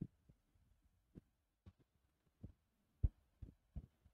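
Stylus tapping on a tablet screen: about eight faint, soft taps spread irregularly, with near quiet between them.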